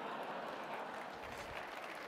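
Faint, steady applause from a large seated audience in a big hall, a dense patter of many hands clapping.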